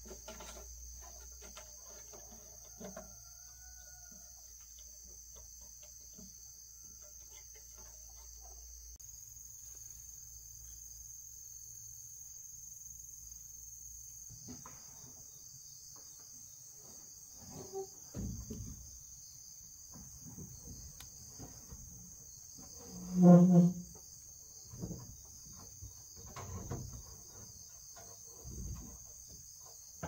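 Forest insects drone steadily at a high pitch. Scattered knocks and scrapes come from corrugated roofing sheets being handled and laid on a pole frame, and one short, loud, pitched sound falls about two-thirds of the way through.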